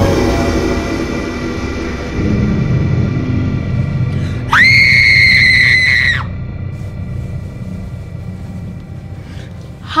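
A sudden loud burst of horror-style music with a low rumble at the start. Midway through comes a girl's high-pitched scream, held steady for about a second and a half before it cuts off.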